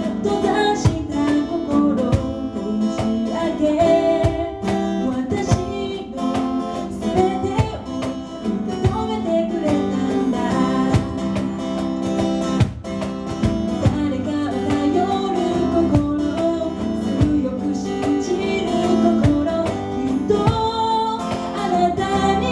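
Live acoustic trio: a woman singing a melody into a microphone over strummed acoustic guitar, with a steady beat played on a cajón.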